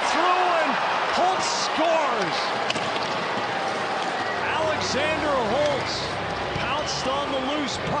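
Ice hockey arena crowd noise just after a goal, with many scattered voices calling and shouting over a steady crowd din and the occasional brief scrape from the ice.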